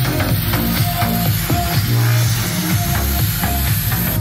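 Electronic dance music with a heavy, pulsing bass line and a rising high sweep, played loud through a Gradiente GST-107 Vibrance vertical soundbar tower with its bass turned up to the maximum of +6.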